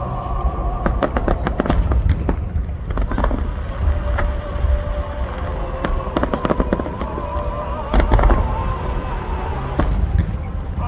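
Aerial firework shells bursting in quick succession, sharp bangs and crackling over a continuous deep rumble of distant booms, with a cluster of louder bangs about eight seconds in.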